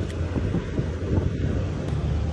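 Steady low rumble of wind buffeting the microphone, with a couple of faint clicks as the negative cable clamp is handled at the battery post.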